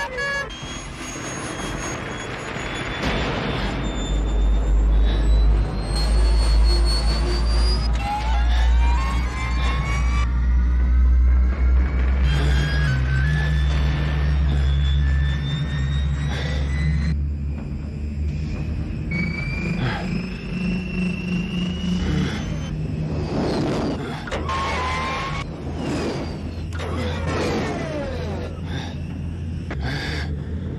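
Film score music over a deep rumble, with many tones sliding up and down in pitch. The rumble is heaviest in the first half and eases after about sixteen seconds.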